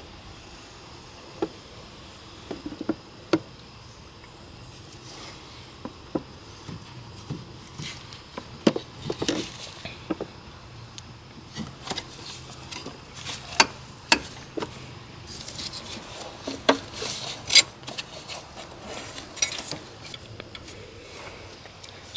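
Irregular light clicks and taps of a metal dipstick tube and gloved hands knocking against engine parts as the tube is worked back into its hole in the engine block, busier in the second half with some rustling.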